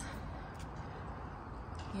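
Steady low outdoor background noise: an even faint hiss with a low rumble and no distinct events.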